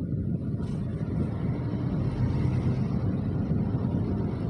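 Steady low rumble of idling engines and street traffic, heard from inside a car stopped in traffic.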